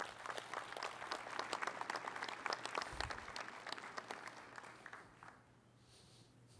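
Audience applauding, a dense patter of many hands clapping that thins out and fades about five seconds in.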